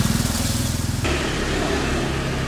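Motorbike engine running close by as it rides past, with a rapid low firing pulse. It breaks off abruptly about a second in, leaving a steady low hum.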